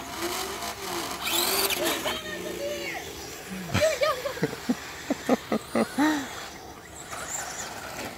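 Electric RC truck motors whining, rising and falling in pitch with the throttle. Near the middle comes a run of about eight short throttle blips.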